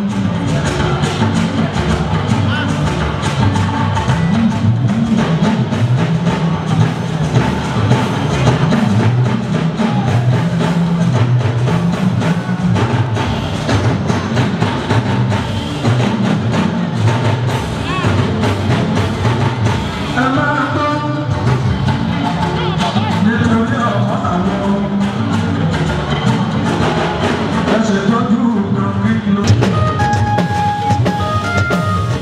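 Live band music playing continuously, with dense drumming and percussion and voices in the mix.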